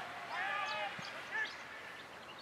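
A player's shout carrying across an Australian rules football ground, followed about a second in by a single dull thump of the football being struck.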